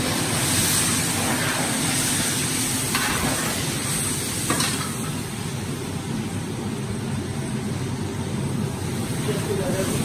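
Meat frying in a large steaming wok, a steady hiss, with a metal ladle scraping and knocking against the pan a few times in the first five seconds.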